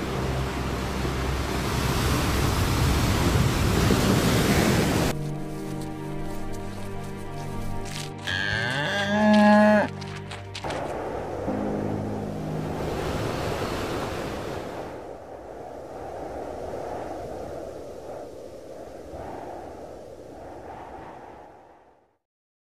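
Surf washing in the first few seconds, then a cow lowing once, a long pitched call about eight seconds in that is the loudest sound, over soft ambient music. The sound fades out near the end.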